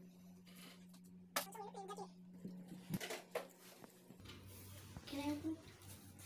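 Brief, indistinct children's voices, twice, with a few sharp knocks and clicks from handling, over a steady low hum.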